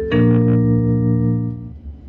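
Electronic attention chime over a tram's public-address speaker: a held chord begins just after the start, sounds for about a second and a half, then fades. It is the signal that comes before a next-stop announcement.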